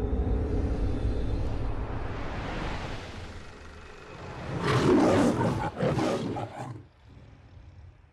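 The MGM logo's lion roaring: two roars about five and six seconds in. They follow a low rumbling drone that fades over the first four seconds.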